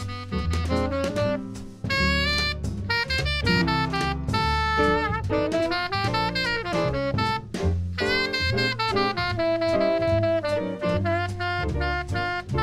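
Small jazz group playing live: a saxophone carries the melody in held notes and short phrases over piano, upright bass and drums.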